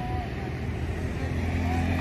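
Low, steady drone of a motor vehicle engine, growing louder in the second half.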